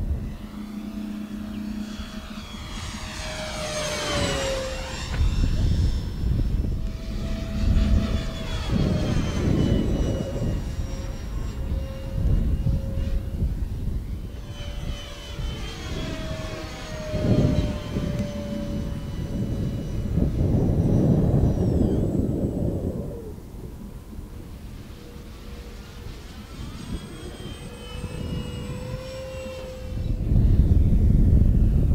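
Electric motor and propeller of an E-Flite 1.2 m P-47 Thunderbolt RC model flying on a 4S battery, whining through several low passes. Its pitch drops each time it goes by, about four seconds in, again around 17 and 23 seconds, and near the end.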